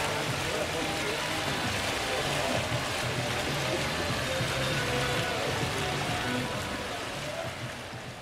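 Tiered fountain splashing steadily into its pool, with faint voices and music in the background; it eases off near the end.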